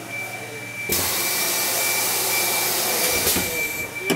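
Headlamp-fitting assembly machine: a loud, steady hiss of compressed air starts suddenly about a second in and lasts nearly three seconds, over a faint constant high whine.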